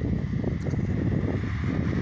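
Wind buffeting a phone microphone outdoors, an irregular low noise, mixed with the sound of traffic on the street alongside.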